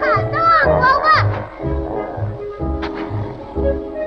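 Orchestral cartoon score with a steady bass beat about twice a second, over which a run of high, arching vocal squeals sounds during the first second or so.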